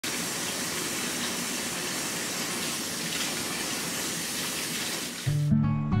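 Kitchen faucet running steadily into a stainless steel sink of soapy water. Near the end, music with sustained low notes comes in and grows louder.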